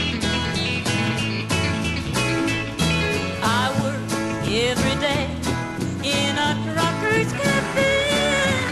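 Live country-rock band playing the opening bars of a song, just after a count-in: electric guitars over bass and a steady drum beat, with sliding, bending lead notes.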